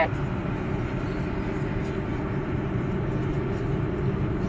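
Steady road and engine noise heard inside the cabin of a moving car, a low, even rumble.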